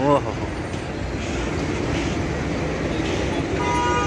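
City street traffic noise from passing cars, with a short car horn toot near the end.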